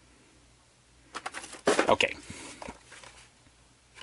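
Plastic blister packaging of boxed toy trains being handled: a short run of sharp clicks and crackles about a second in, with a few fainter clicks after.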